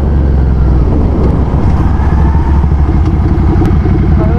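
Motorcycle engine running, with a loud low exhaust note that turns into fast even pulsing after about a second.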